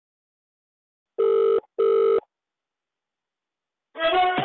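Telephone ringback tone on a mobile call: one double ring, two short identical beeps with a brief gap between them, about a second in, in the Indian ringback pattern.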